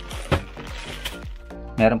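Two sharp knocks from the plastic casing of a mini evaporative air cooler being handled and set down on a table, the first the louder, over steady background music.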